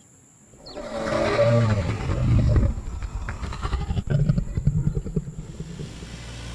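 Dinosaur roar sound effect: loud, rough growling roars that begin just under a second in and carry on for several seconds.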